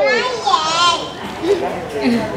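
A high, wavering, wordless whining voice for about a second, then quieter.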